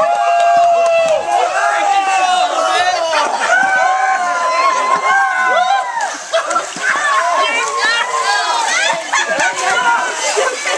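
Several people shrieking and yelling in high voices, overlapping one another, over water splashing and sloshing in a swimming pool.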